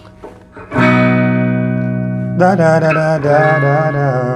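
Semi-hollow-body electric guitar played clean. A chord is strummed about a second in and left ringing, then a second chord comes in about two and a half seconds in and rings on.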